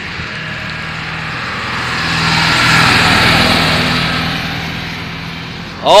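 Pickup truck driving past on a paved road: engine hum and tyre noise swell to their loudest about three seconds in, then fade as it goes by.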